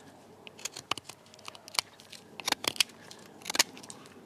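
Tanto blade of a survival baton whittling a damp, knotty stick: a string of short, irregular scraping cuts as the blade shaves the wood, which resists the blade.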